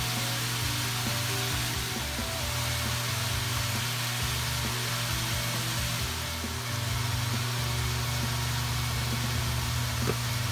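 Vegetables sizzling steadily in a hot frying pan under background music with low sustained notes.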